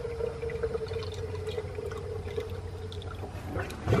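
Water from a garden hose running into a fish tank: a steady trickle with a faint steady tone that fades out shortly before the end.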